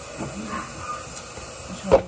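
Water running from a kitchen sink tap with a steady hiss, and a sharp knock near the end as a plastic shampoo bottle is picked up off the counter.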